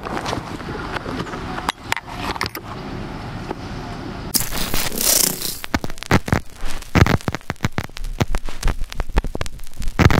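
Outdoor background noise with a few scattered clicks. About four seconds in, a burst of static hiss gives way to rapid, irregular digital glitch stutters and thumps: a glitch-style outro sound effect.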